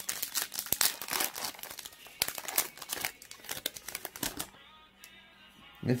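Foil wrapper of a 2020 Topps Holiday baseball card pack crinkling and tearing as it is ripped open by hand: a quick, dense run of sharp crackles for about four and a half seconds, then it stops.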